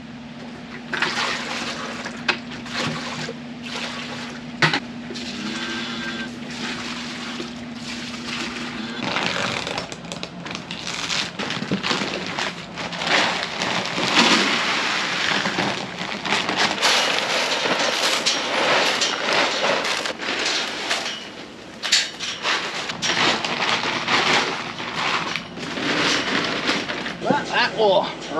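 Feed pellets poured from a bag into plastic buckets, a rattling pour with scattered clatters. A steady low hum runs under the first nine seconds or so.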